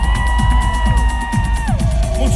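Live synth-pop band playing through a concert PA, heard from the audience: a steady kick-drum beat under one long held high note that slides up at the start and falls away near the end.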